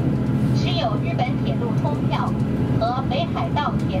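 Inside a KiHa 283 series diesel express railcar under way: the diesel engine and running gear give a steady low hum beneath a recorded Chinese-language passenger announcement, which is the loudest sound.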